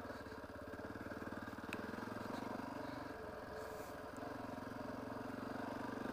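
Dirt bike engine running at low revs while being ridden, a steady pulsing note that eases off briefly in the middle and then picks back up.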